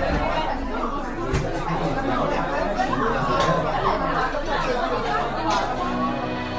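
Several people chattering at once, no single clear voice, with a few sharp knocks or clicks among the talk.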